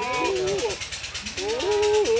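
Goat bleating twice: two wavering calls with a short lull between them.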